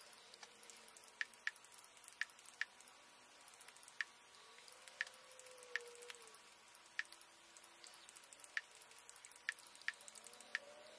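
About a dozen faint, irregularly spaced clicks as the selection is stepped letter by letter across the Apple TV's on-screen search keyboard with the remote.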